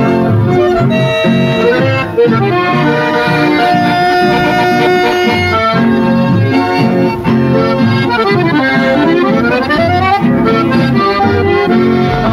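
Chamamé recording led by accordion, playing a steady melody with a fast run down and back up about eight to ten seconds in.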